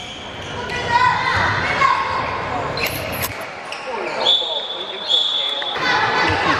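A handball bouncing and being passed on an indoor court, echoing in a large hall, with two sharp ball impacts about three seconds in. Near the end come two long, high, steady whistle blasts from the referee.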